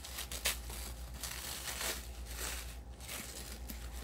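Thin tissue paper crinkling and tearing in irregular rustles as a wrapped parcel is pulled open by hand.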